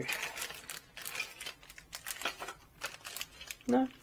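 A clear plastic bag of small parts crinkling and rustling as it is handled, in irregular crackles.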